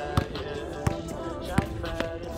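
A basketball bouncing on the court three times, about three-quarters of a second apart, over background music with vocals.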